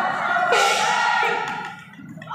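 Crowd of spectators shouting and cheering in a large hall, many voices at once, with a loud surge about half a second in before the noise dies down near the end.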